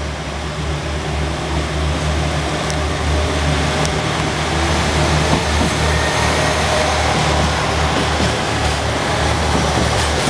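JR Shikoku 2000-series diesel railcar running close by, its diesel engines giving a steady low hum under the noise of the moving train, which grows gradually louder.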